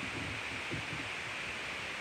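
Steady background hiss with a few faint, soft rustles.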